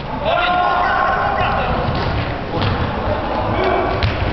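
Players shouting across an indoor football court, with the thuds of the ball being kicked, all echoing in the sports hall. The shouts come in the first second and a half, the thuds a little later.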